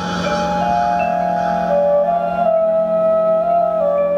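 Marching band winds, led by flutes, playing a slow, soft passage of long held notes that shift one at a time over a steady low drone.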